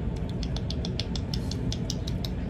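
Dog licking and chewing at a hand offering treats: a quick, even run of small wet clicks, about seven a second, over a steady low rumble.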